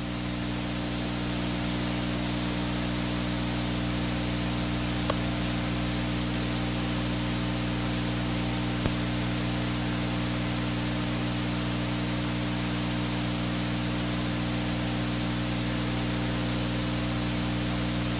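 Steady hiss of static over a low electrical hum with several steady tones, from the recording's audio feed; two faint clicks about five and nine seconds in.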